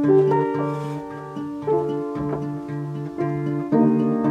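Nylon-string classical guitar fingerpicked: a low D repeated about twice a second under its ringing octave, with higher notes picked above, played harder just before the end.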